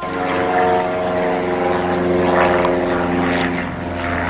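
Propeller aircraft engine running steadily, heard as a stack of steady tones.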